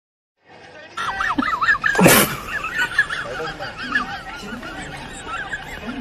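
A squeaky, warbling comic sound effect that wobbles up and down in pitch, broken by a short loud noisy burst about two seconds in.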